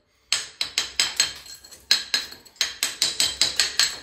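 Hammer striking a steel Bellota cold chisel again and again, chipping loose, flaking plaster off a wall. It is a quick series of sharp metallic blows, about three a second, each with a brief ring.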